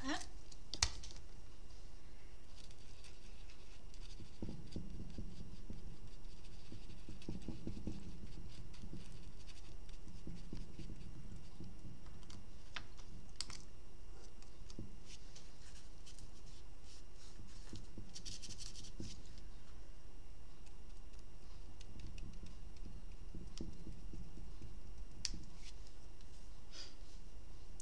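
Faint scratching and light tapping of a small paintbrush working paint on a plastic palette lid, over a steady low room hum, with two sharp clicks right at the start.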